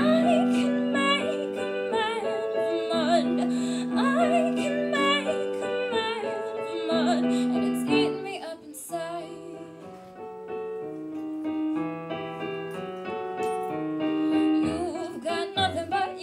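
Digital piano playing sustained chords, with a woman's voice singing held, wavering notes over parts of it. The playing softens for a couple of seconds around the middle before picking up again.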